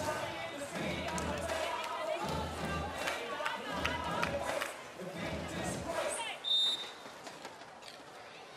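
Venue sound between rallies: voices and music over the arena's public address, with light crowd noise. A short high whistle blast comes about six and a half seconds in, typical of the referee's whistle that authorises the serve, and the sound is quieter after it.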